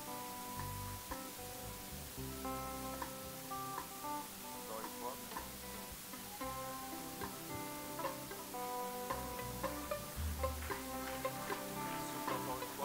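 Soft instrumental background music: sustained plucked notes changing every second or so over a low bass line.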